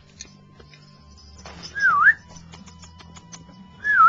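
A person whistling twice, each a short whistle that dips in pitch and rises again, about two seconds apart, the second near the end.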